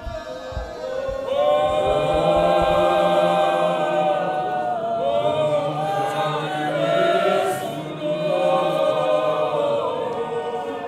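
Men's choir singing a cappella in harmony, holding long sustained chords that swell in about a second in. A few low thumps sound under the voices near the start.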